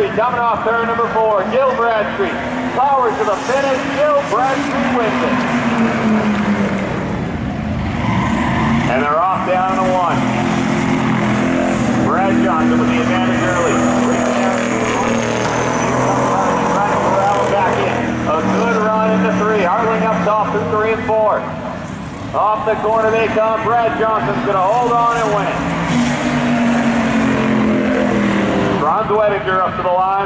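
Street cars racing around an oval track, their engines rising and falling in pitch as they accelerate and lift. A voice talks over it at times.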